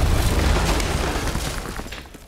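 A heavy boom with a deep rumble, loudest at the start and fading away over about two seconds.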